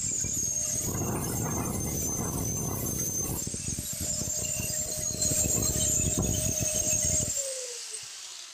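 Electric angle grinder running with a steady whine while its disc grinds intermittently against the laminated iron core of a ceiling fan stator, shaving it down so it no longer rubs. About seven seconds in, the grinding stops and the grinder is switched off, its whine falling as it winds down.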